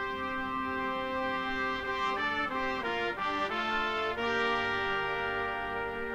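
A drum corps marching brass ensemble, mellophones and baritones among it, playing sustained chords. The chord changes a few times near the middle, then one long chord is held to the end.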